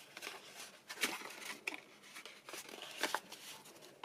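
Scored card being folded and rubbed down along its score lines: soft rustling and scraping of paper, with brief sharper crackles of the card about one second and three seconds in.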